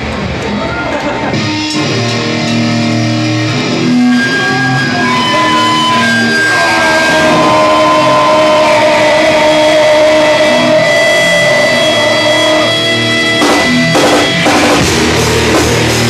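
Live rock band playing: electric guitar and bass hold long, ringing notes that step from pitch to pitch, with a run of drum hits near the end.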